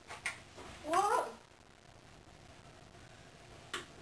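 A short, rising, pitched vocal cry about a second in, with a couple of soft knocks just before it and one more near the end.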